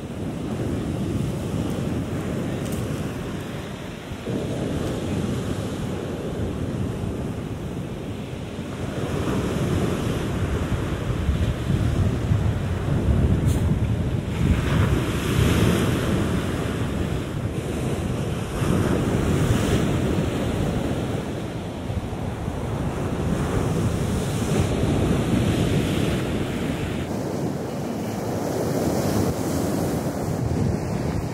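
Sea waves breaking and washing up a pebbly shore, the surf swelling and easing every few seconds, with wind buffeting the microphone.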